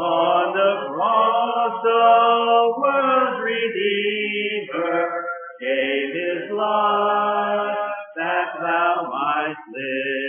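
A congregation singing a hymn a cappella in parts, with long held notes and no instruments.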